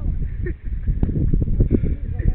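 Wind buffeting the camera microphone: a loud, uneven low rumble, with faint voices in the background.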